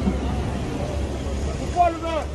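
Indistinct voices talking over a steady low rumble, with one voice speaking up clearly near the end.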